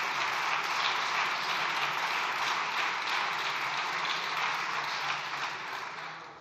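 Sustained applause from a large group of people clapping, dying away near the end.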